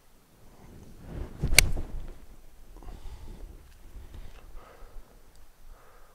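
Golf iron swung into a ball off fairway turf: a brief rising swish, then a single sharp click of clubface on ball about one and a half seconds in.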